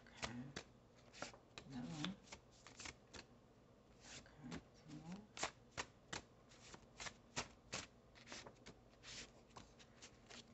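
A stack of small paper cards being shuffled by hand, making an irregular run of quick, soft card flicks and snaps.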